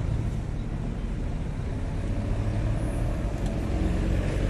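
Steady low rumble of road traffic and vehicle engines on a busy city avenue.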